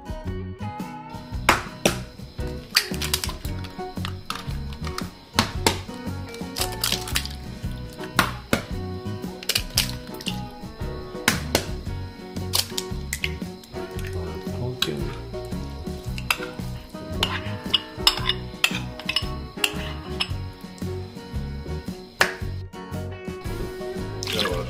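Background music with many sharp clinks and taps of a spoon and bowls as dry ingredients are mixed in a glass bowl and eggs are cracked into a ceramic mixing bowl.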